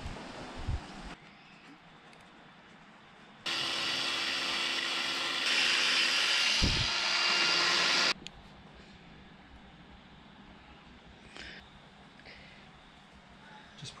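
Angle grinder with a polishing disc running for about four and a half seconds as it buffs a cast-aluminium housing. It gets louder about halfway through, then cuts off suddenly.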